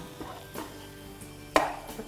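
A spatula knocking once against a metal frying pan while stirring food, a sharp clack with a brief ring about one and a half seconds in, over faint background music.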